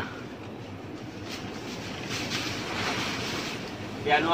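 Leaves rustling in a tree canopy: a rushing, hissy noise that swells about two seconds in and eases off shortly before the end.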